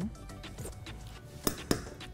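Background music, with two sharp knocks a quarter-second apart about a second and a half in, each leaving a brief metallic ring: a wooden spatula knocking against a stainless steel soup pot.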